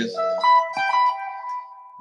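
Electric guitar playing a short phrase of a few single, sustained notes, stepping between pitches, as a pentatonic lick is tried out from memory.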